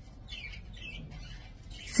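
Faint, short chirps of small birds, heard a few times over a low steady hum.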